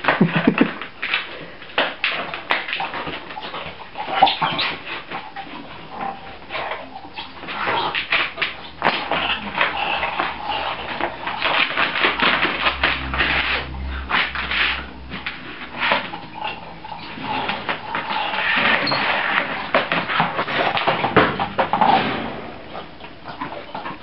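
A dog rummaging and climbing in a plastic laundry basket of toys and cloths: continuous rustling and scrabbling with many small knocks of the basket and paws on the tiled floor.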